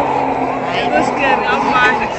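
People talking, several voices overlapping.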